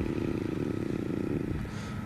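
A motor vehicle engine running, a low rough drone that fades about one and a half seconds in, over a steady low background hum.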